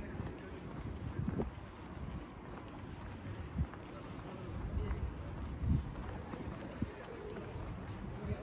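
Gusty wind rumbling on the microphone outdoors, with a few soft thumps scattered through it.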